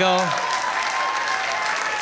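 A comedy club audience applauding steadily, after the last syllable of a spoken word at the very start.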